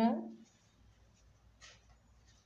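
The end of a woman's spoken word, then a quiet room with one faint, brief rustle about one and a half seconds in, from yarn being worked with a crochet hook.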